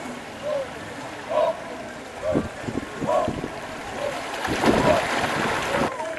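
Men's voices shouting short rhythmic calls about once a second from a Māori waka (war canoe) crew keeping paddling time, over the wash and splash of paddles in water that grows louder toward the end.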